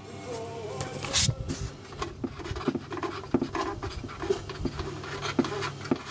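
A TEAC portable CD player switched on after repair: a steady low buzz with many short clicks and taps from its buttons and case.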